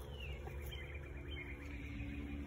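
A songbird singing faintly: a short downward-sliding note, then a quick run of repeated chirps, over a steady low outdoor rumble.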